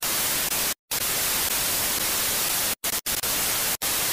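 TV static sound effect: a loud, even hiss of white noise, with a short dropout about a second in and three brief cut-outs in the last second and a half.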